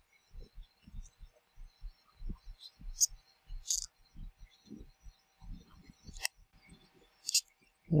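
Fingers handling and adjusting an automatic chronograph wristwatch: a run of soft, irregular low bumps with four sharp clicks spread through it, as the crown and pushers are worked to set the chronograph hands to zero.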